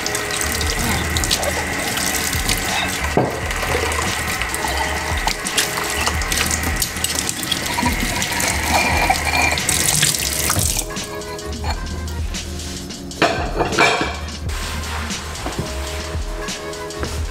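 Kitchen faucet running onto dishes in a sink as bowls are rinsed by hand, the water stopping about two-thirds of the way through. A short burst of noise comes near the end. Background music with a steady bass beat plays underneath.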